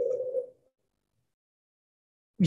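The tail of a drawn-out spoken "uh" fades out about half a second in, followed by silence.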